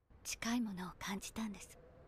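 Soft, quiet speech close to a whisper: a few short phrases of dialogue from the subtitled Japanese anime soundtrack.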